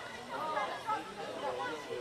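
Voices of players and spectators calling and chattering around the pitch, with no clear words.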